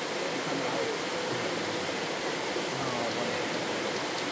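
Steady rushing of a shallow river flowing over rocks, with faint voices in the background.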